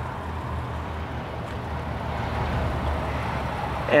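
Steady low mechanical hum under a faint even rush, with no distinct events.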